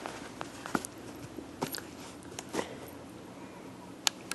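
Chocolate Labrador puppy biting and chewing at a dog toy's packaging, making a scattered series of short crackles and clicks.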